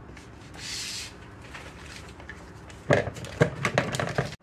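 Paper wrapper rustling and crinkling as a stick of butter is unwrapped by hand. There is a soft rustle about half a second in, then a quick run of crinkles near the end.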